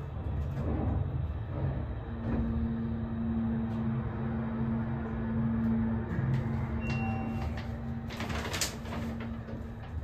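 ThyssenKrupp hydraulic elevator travelling between floors: a steady hum with a droning tone that starts about two seconds in and stops just before the end. A short beep comes about seven seconds in, followed by a burst of noise as the cab doors slide open.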